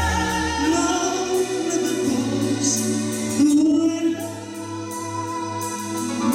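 Male singer singing live into a handheld microphone over band accompaniment, holding long notes; the loudest held note comes a little past the middle, then the music eases somewhat.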